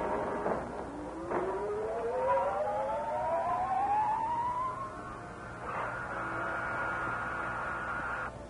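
Dramatic 1930s film-score music: a sharp orchestral accent, then a slow rising slide in pitch over several seconds, then a loud held chord that cuts off suddenly.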